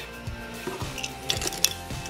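Metal wristwatches clinking against each other as a hand rummages in a box full of them, with a few sharp clinks about one and a half seconds in.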